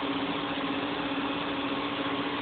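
Steady machine hum from an outdoor cell site's equipment cabinets and their cooling units, a constant low tone over an even rushing noise.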